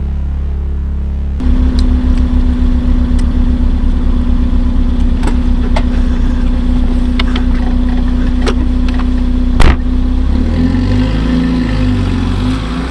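A small hatchback's engine running at idle, a steady hum with a fast low pulsing, with a few clicks and one loud thump. The engine note changes near the end as the car moves off.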